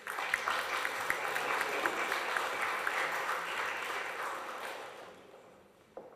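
Audience applauding: the clapping starts all at once, holds steady, then dies away about five seconds in.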